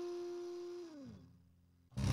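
Electric guitar through a 15-watt practice amp whose speaker cone is sliced and stuck with sewing pins, knobs at 5: one held note fades, slides down in pitch about a second in and dies away. A faint amp hum is left.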